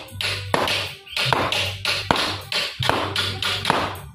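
Hand hammering on a copper sheet, a quick run of sharp metallic taps about two to three a second, as in chasing or embossing the copper by hand. Background music plays under the taps.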